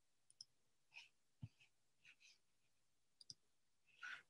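Near silence broken by faint computer mouse clicks: a quick double click near the start and another near the end, with a soft knock and a few small ticks in between.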